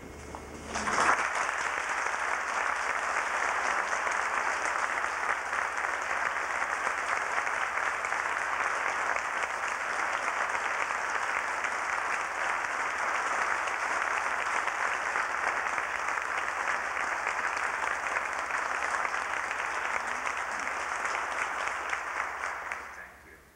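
Sustained audience applause: a dense crowd of hands clapping, starting about a second in and holding steady.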